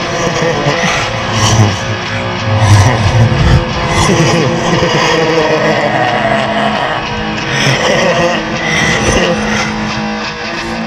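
Instrumental break of a guitar-driven rock song, with no singing: loud, dense band music.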